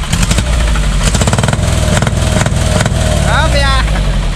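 Light truck engine being revved up and down, its exhaust running out through a freshly fitted split manifold and twin chrome tailpipes, with a rapid pulsing exhaust note at the higher revs.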